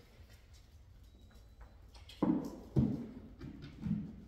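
A German shepherd jumping up onto a raised dog-training platform: three knocks and thumps from its paws on the platform, starting about halfway.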